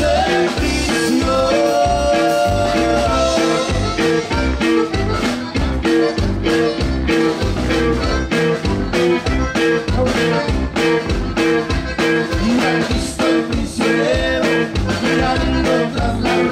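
Live conjunto band playing: a button accordion carries the tune over guitar and a drum kit keeping a steady beat.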